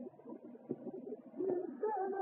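Flamenco cante and Spanish guitar from a 1952 record: a short lull between sung phrases with a few guitar plucks, then the cantaor's voice coming back on a held, wavering note about a second and a half in. The sound is thin and dull, as on an old disc transfer.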